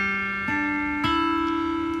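Carvin acoustic guitar fingerpicked slowly, three single notes about half a second apart, each left ringing: open G string, B string at the third fret, then open high E string. These are the first three notes of a picking pattern built around a D chord.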